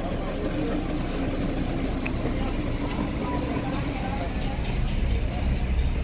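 Steady low hum of a car's engine and tyres heard from inside the cabin while driving slowly, with faint street noise.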